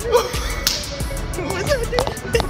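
Background music with a quick beat, and one sharp slap of hands just over half a second in, typical of a greeting handclasp.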